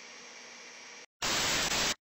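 Faint room tone, then after a split second of dead silence a short, loud burst of even static hiss that starts and cuts off abruptly after under a second, like an inserted TV-static sound effect.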